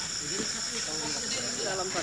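Insects droning steadily in two high-pitched tones, with faint voices underneath.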